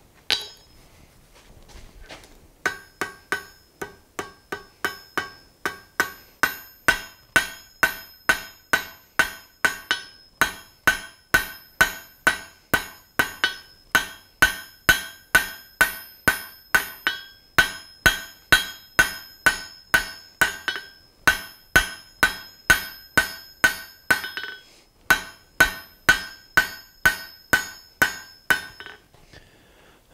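Hand hammer striking red-hot steel on an anvil, drawing out the tapered tip of a forged poker on its third heat. A steady run of about two to three blows a second starts a couple of seconds in, each blow ringing off the anvil, with two short pauses.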